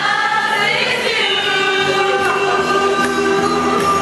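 A group of people singing together, holding long notes.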